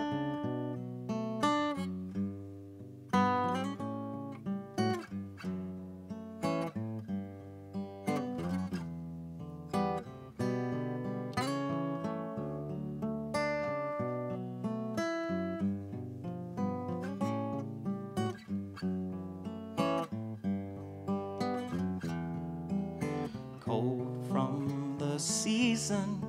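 Solo Takamine acoustic guitar playing a song's instrumental introduction: a steady run of picked notes ringing over held bass notes.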